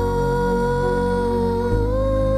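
A young girl singing one long held note into a microphone over sustained keyboard chords; near the end the chord changes and her note steps up in pitch.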